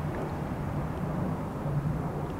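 Outdoor background noise with a steady low engine drone from a vehicle running somewhere away from the microphone.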